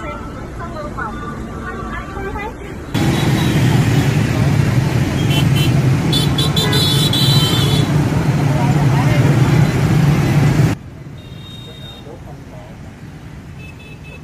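Loud, steady vehicle engine rumble heard from inside a vehicle. It starts abruptly about three seconds in and cuts off just before eleven seconds, with a few brief high tones and clicks in the middle. Quieter background noise and faint voices lie either side.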